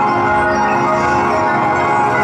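Live ambient music: ringing, bell-like vibraphone tones blended with electronic sound into a steady, dense wash of many held pitches.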